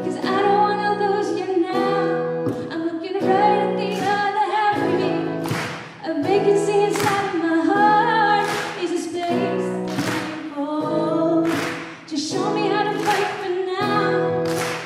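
A young woman singing through a microphone, holding long notes, over an acoustic guitar strummed about every second and a half.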